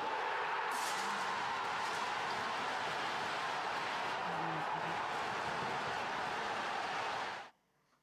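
Crowd of football fans cheering in celebration, a steady, dense roar of many voices that cuts off suddenly near the end.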